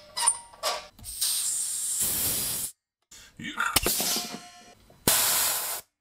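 Compressed air hissing out of a Vikhr twin-piston air compressor's tank safety valve as it is pulled open by hand. There are two releases: one of nearly two seconds that cuts off sharply, then a shorter one near the end, with a few clicks between them.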